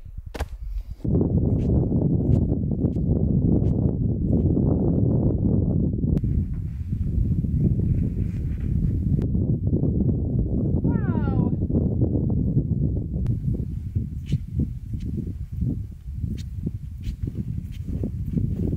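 Strong wind buffeting the microphone in a steady, gusting rumble. A brief high-pitched call rises and falls about eleven seconds in.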